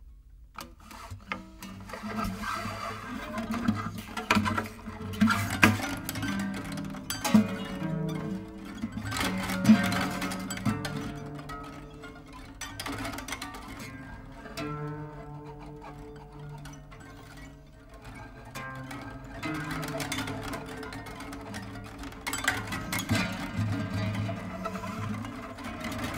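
Two classical guitars played as a duet: plucked notes and ringing low bass notes, with a few sharp accented plucks. The music starts about half a second in.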